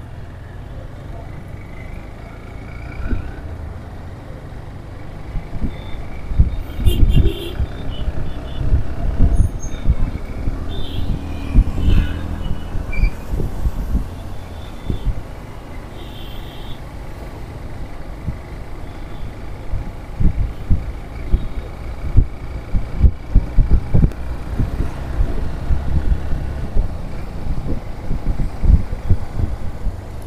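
Road traffic heard from a moving vehicle, with motorcycles and other vehicles close by. Wind rumbles on the microphone in uneven gusts, louder from about six seconds in. A few short, faint higher tones sound now and then.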